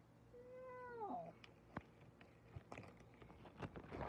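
A cat meows once, a drawn-out call about a second long that falls in pitch at its end. A few faint clicks follow.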